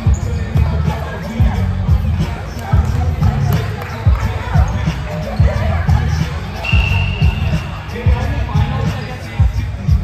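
Irregular thuds of volleyballs hitting the floor and other surfaces around a large, echoing gym, over players' chatter. A brief high squeak sounds about seven seconds in.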